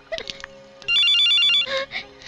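Telephone ringing with a warbling two-tone electronic trill: one ring of under a second, about a second in.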